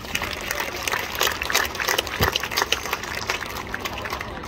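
A small audience applauding, with separate hand claps that can be picked out, and one low thump about two seconds in.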